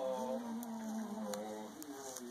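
A person's voice holding one long, drawn-out vocal sound for about a second and a half, with a faint click partway through.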